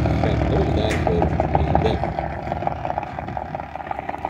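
Drag racing cars' engines heard from the stands down the strip, fading steadily as the cars slow after the run. A voice is heard over it early on.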